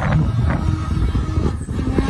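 Electric brushless motor and propeller of a 3D aerobatic RC plane (T-Motor AM670) whining overhead, its pitch sliding up and down with the throttle, over low wind rumble on the microphone.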